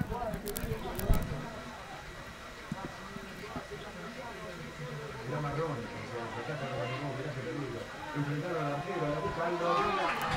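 Faint, distant voices of football players and onlookers calling out across the pitch, growing a little busier in the second half. There is a single thump about a second in.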